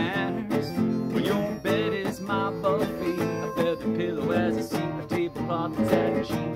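Strummed acoustic guitar with a harmonica playing a wavering melody over it, an instrumental break in a country-style song.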